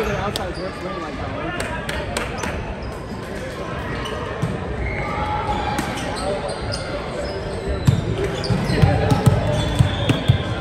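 Gymnasium hubbub of players' voices, with sharp slaps and knocks of volleyballs being hit and bounced on the courts around. A run of heavier low thuds comes in the last two seconds.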